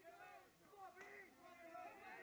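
Near silence with faint, distant voices calling out.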